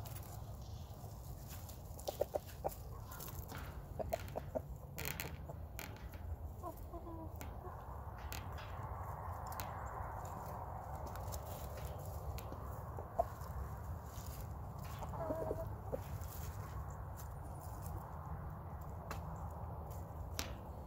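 Backyard hens and a rooster clucking quietly a few times while they scratch and peck through dry leaf litter, with scattered sharp clicks and rustles from their feet and beaks.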